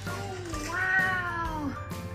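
A woman's long, drawn-out "oh" exclamation, falling in pitch, played from a television, over soft background music.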